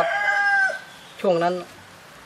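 A long, raspy animal call held at one steady pitch, stopping sharply less than a second in; a man speaks briefly after it.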